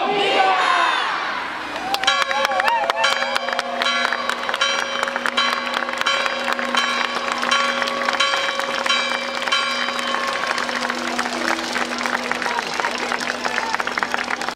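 A civic bell rung by rope in rapid repeated strokes, each strike ringing, starting about two seconds in and running until just before the end, over a cheering crowd. A crowd shouts just before the ringing starts.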